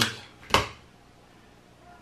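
A single sharp click or tap about half a second in, followed by quiet room tone.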